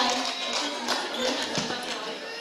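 Scattered audience clapping dying away as the children bow, with music playing underneath.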